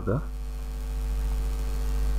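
Steady low electrical mains hum with a ladder of even overtones, running unchanged under a pause in the talk.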